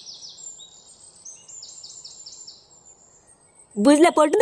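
Birds chirping: two quick runs of about five high, repeated chirps each, over a faint steady hiss.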